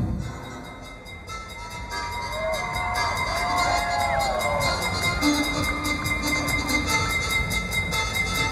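Live electro-pop band music through a festival sound system: after a brief drop in level, held synthesizer tones and notes that glide in pitch build up, joined from about three seconds in by a fast, steady ticking of high percussion.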